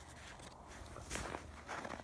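Footsteps crunching in deep snow: quiet at first, then a run of short crunches from about a second in, growing louder toward the end.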